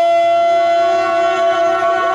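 One long note held at a dead-steady pitch by a melodic instrument of the jatra accompaniment, without vibrato or breaks.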